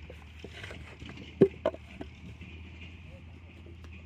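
A few sharp knocks as a mud-coated brick mould is handled and set down on sandy ground, the loudest about a second and a half in, over a steady low hum.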